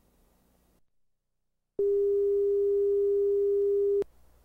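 Steady, mid-pitched pure reference tone (line-up tone) that starts about two seconds in and cuts off abruptly. It is the audio calibration tone laid down with the slate at the head of a broadcast videotape.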